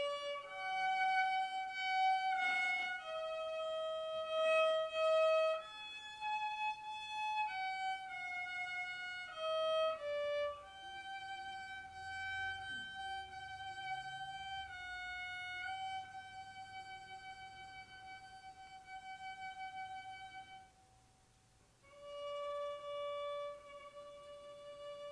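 Solo violin playing a slow melody, one long held note after another, with a short pause near the end before it comes back in.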